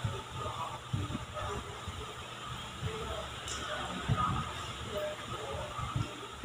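Silicone spatula working stiff cookie dough with chopped walnuts in a stainless steel bowl: irregular soft knocks and scrapes against the bowl as the dough is folded and mixed.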